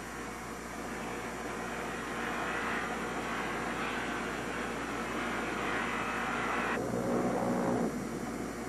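A steady, hissing machine noise from a computer-controlled high-speed circular saw cutting marble under a cooling water spray. The higher part of the noise cuts off suddenly about a second before the end.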